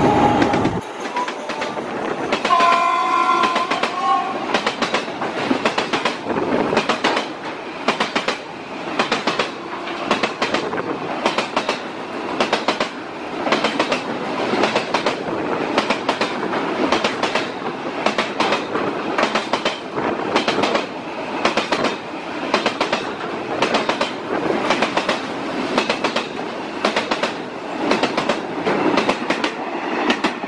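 Railway carriages rolling past at close range, their wheels clicking over the rail joints in a steady, repeating rhythm of paired knocks. The locomotive's horn sounds briefly about three seconds in.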